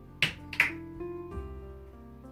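Two sharp clicks about a third of a second apart, from objects handled on a kitchen counter, over soft background music.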